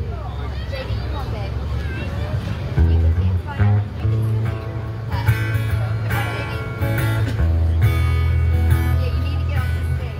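Amplified acoustic guitar starting to play: a few picked notes about three seconds in, then strummed chords from about five seconds on, with people talking underneath at the start.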